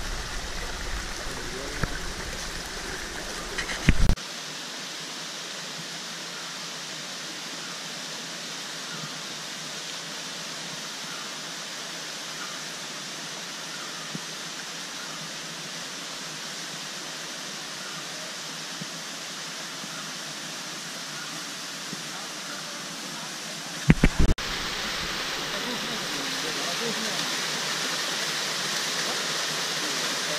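Forest stream running over rocks, a steady rush of water. The sound changes abruptly twice, about four seconds in and again near twenty-four seconds, each time with a short loud knock. After the second change the water is louder and brighter, the splash of a small waterfall.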